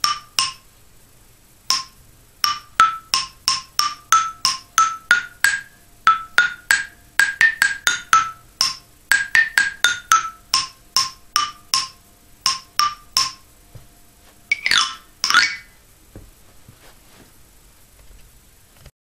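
Eight-bar wooden toy xylophone struck with wooden mallets, playing a simple melody one note at a time, then two quick runs swept across the bars near the end.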